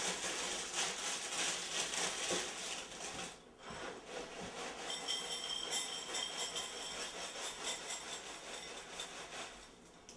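Cereal box's plastic liner bag crinkling and rustling as it is torn open, then Honey Nut Cheerios rattling out of the box as it is tipped to pour.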